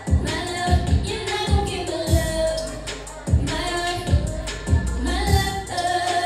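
A woman singing an R&B song live into a handheld microphone over a beat with heavy, regularly repeating bass kicks.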